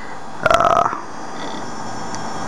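A short, croaky, burp-like vocal sound from a man, lasting about half a second, about midway through. Under it is the steady whir of the running desktop computer.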